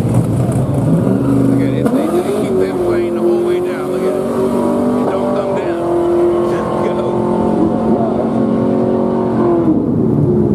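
Car engines running at a drag strip: several steady engine notes that shift pitch every second or so, with a rising rev about two seconds in and another near the end.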